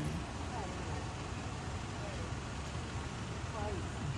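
Steady low rumble of idling vehicles on the street, with faint distant voices talking now and then.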